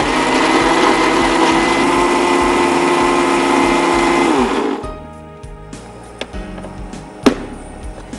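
Electric mixer-grinder with a small stainless-steel jar running steadily and loudly, grinding. About four and a half seconds in it is switched off and its pitch falls as the motor winds down.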